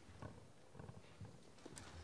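Near silence: faint room tone with a few soft, irregular knocks and clicks.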